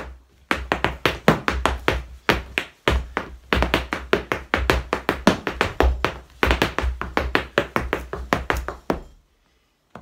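Irish dance hard shoes striking a floor mat in fast rhythmic taps and knocks, several a second, as a hornpipe step is danced through, with a brief break near the third second. The tapping stops about a second before the end.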